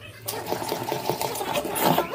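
Steel spoon stirring thick dosa batter in a steel vessel, scraping against the sides in quick repeated strokes that start a moment in and grow louder toward the end.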